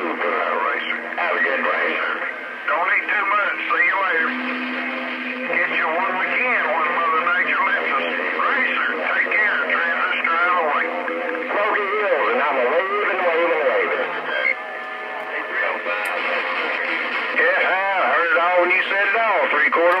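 Distant stations' voices coming in over a Stryker CB radio's speaker on long-distance skip, thin and narrow-sounding, with a steady low hum under them for stretches.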